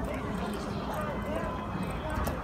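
Footsteps on paving outdoors with faint, indistinct voices of passers-by.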